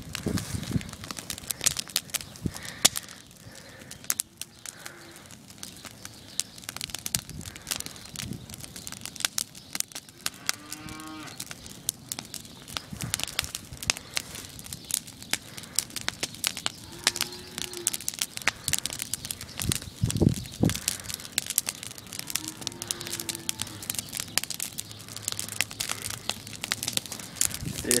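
Wood fire in burning pallets crackling and popping. Three drawn-out animal calls are heard, one about a third of the way in, one past the middle and one later.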